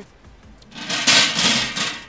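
Round metal table dragged across stone paving: a loud scrape lasting about a second, starting a little before the middle.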